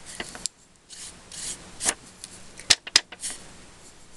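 Craft supplies being rummaged through and handled on a work desk: rubbing and scraping of paper and tools, with two sharp clicks close together about three seconds in.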